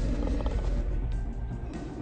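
Trailer soundtrack music under a deep, low creature growl.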